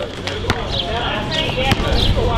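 A basketball bouncing on asphalt: several dribbles at uneven intervals, with voices in the background.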